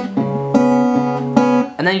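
Acoustic guitar finger-picked slowly on a C-sharp octave shape: a low note and its octave plucked a few times and left ringing over each other. The notes fade as a voice starts near the end.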